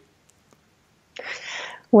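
Near silence for about a second, then a woman's audible breath, short and breathy, just before she begins to speak.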